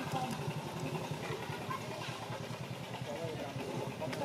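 A small engine running steadily in the background with a fast, even pulse, under faint voices.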